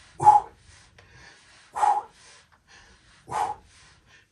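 Three short, forceful exhalations of effort from a person doing crunch-type exercise, evenly spaced about a second and a half apart.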